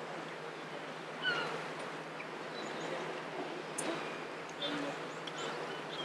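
Outdoor ambience: a steady, low hiss of background noise with a few faint, brief distant sounds, such as far-off voices or birds, about a second in and again around the middle.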